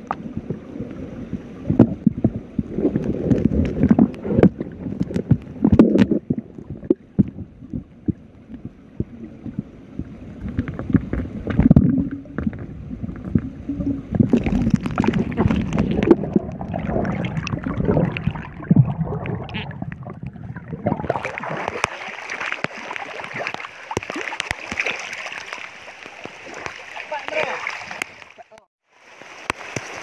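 Muffled sound of water heard from a phone camera held underwater: low rumbling and gurgling with many scattered knocks and clicks. About two-thirds of the way in, the camera comes above the surface and the sound turns to an even hiss of rain falling on the river.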